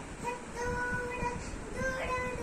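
A young child singing a children's song in long, held notes, about two notes across the two seconds.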